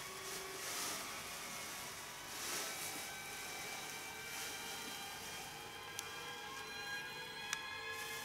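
Quiet background music of steady, held tones.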